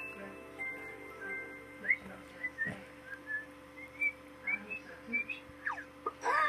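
Children's-TV background music: a few held notes, then a run of short, high whistle-like chirps, and a quick falling glide near the end.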